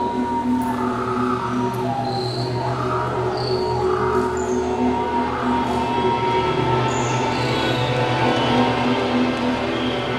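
Dozens of electric guitars played together, holding sustained, screeching drones: a dense, steady wash of many overlapping pitches, with short high squeals breaking out above it now and then.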